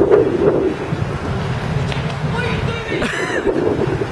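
Wind buffeting the microphone over the chatter of an outdoor crowd, with a short, voice-like shout a little after two seconds in and a brief sharp sound near three seconds in.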